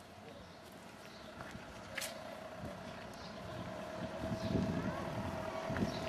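Street ambience with a motor vehicle running close by: a steady hum sets in about two seconds in, with a sharp click at the same moment, and a low rumble that grows louder towards the end.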